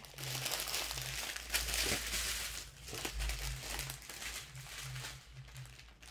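Diamond painting kit packaging rustling and crinkling as it is handled and set aside, dying down near the end.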